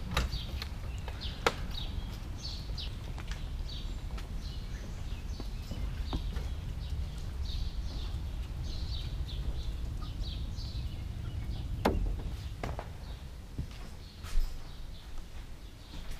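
Small birds chirping over and over, short high calls repeated throughout, with a few sharp knocks and a low steady rumble underneath.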